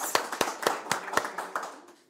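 A small group of people clapping, a quick run of claps that fades out near the end.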